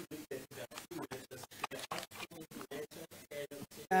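Faint courtroom sound with low voices, chopped by rapid, regular audio dropouts about eight or nine times a second: a stuttering live-stream audio glitch.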